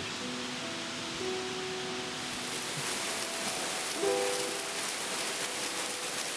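Skok waterfall pouring in a steady rush of water, which turns brighter and more hissing about two seconds in. Soft background music of long held notes plays over it.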